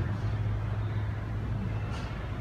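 A low, steady drone that slowly fades, carrying on from the amplified guitar and bass music just before.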